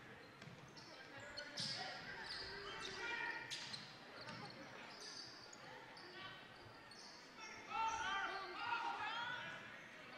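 A basketball being dribbled on a hardwood gym floor, with sneakers squeaking and players and crowd calling out in a large, echoing gym. Voices rise for a moment near the end.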